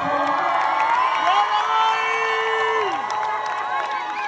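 Concert audience cheering and shouting, many voices overlapping at once, with one voice holding a long note for about a second and a half in the middle.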